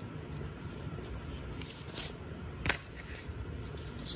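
Air conditioner running steadily, a low hum that is 'blasting', with a few brief rustles of stiff paint-coated paper sheets being handled, about one and a half, two and nearly three seconds in.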